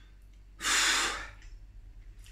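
A man's single sharp breath, about half a second in and lasting well under a second, as he reacts to a mouth burnt by scalding-hot food.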